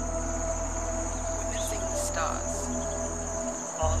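Steady high-pitched chirring of insects in summer vegetation, with a low steady hum underneath that cuts out just before the end.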